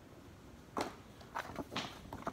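Faint, brief rustles and soft knocks of paper cards and box packaging being handled, a few short ones in the second half.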